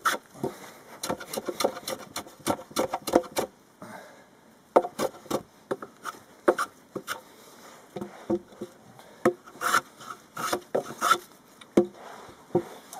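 Hand tool shaving the end of a timber fence stay: repeated short scraping strokes in quick runs, with brief pauses between the runs.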